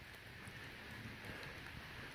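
Quiet pause: faint, steady background hiss with no distinct sound.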